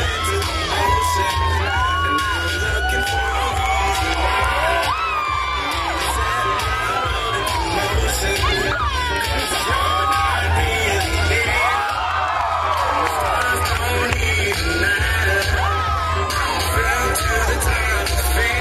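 Recorded dance music with a heavy bass beat playing through outdoor PA speakers, with the audience cheering and whooping over it.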